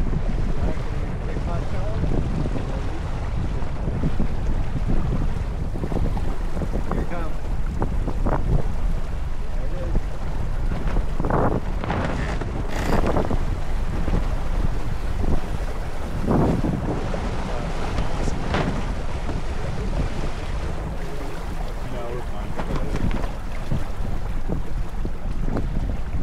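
Wind buffeting the microphone over the rush of water along a sailboat's hull under way, with a few louder splashes of water around the middle.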